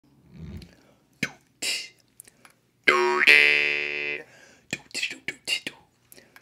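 A Jaw Harp Johnson Midrange jaw harp plucked once about three seconds in: a buzzing twang whose overtone sweeps upward, then holds as the note dies away over about a second. Short clicks and puffs come before and after it.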